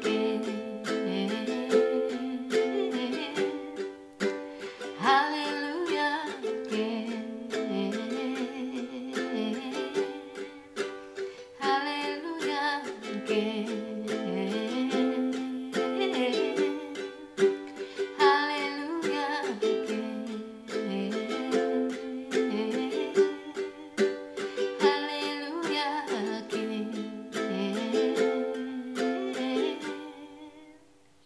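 Ukulele strummed in a steady rhythm of chords, with a woman's voice singing long, wordless notes over it every few seconds. The playing stops at the very end.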